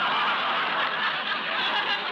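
Studio audience laughing, a sustained wave of crowd laughter without a break, on a narrow-band 1940s broadcast recording.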